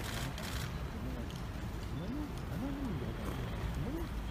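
Indistinct voices murmuring close by, in short rising and falling phrases, over a steady low outdoor rumble. There is a brief rustle right at the start.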